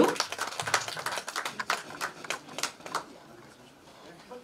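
Sparse hand clapping from a few people, irregular claps that thin out and stop about three seconds in.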